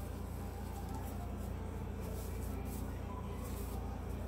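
Faint rustling and small crinkles from toilet paper and damp hair being handled while a paper curler is worked out of the hair, over a steady low hum.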